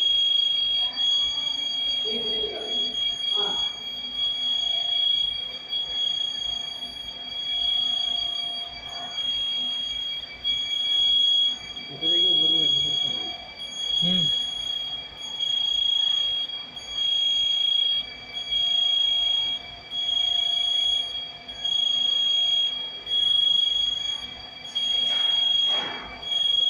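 Warning beeper on a motorized mobile storage rack sounding while the carriages move: a high-pitched electronic tone pulsing louder about every second and a half.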